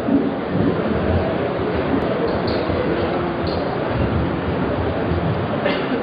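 A steady rumbling background of a large hall, picked up through an open microphone, with a small knock right at the start.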